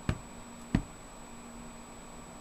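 Two dull knocks about two-thirds of a second apart: handling noise as the metal power supply casing is held and moved close to the camera.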